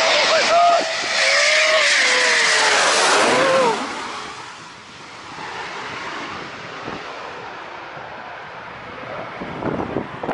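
Military fighter jet passing low overhead on its approach to the runway. A loud jet-engine roar with whining tones lasts the first three to four seconds, then drops away suddenly to a fading rumble.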